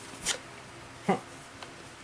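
Two brief rustling handling sounds, about a second apart, as a hand moves things about on a cloth-covered table.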